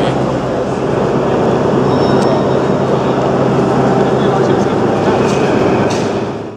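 A crowd's chatter blending into a steady murmur, over a constant low hum.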